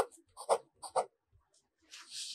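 Fountain pen nib scratching on paper in about four short, quick strokes within the first second or so, as numerals are written.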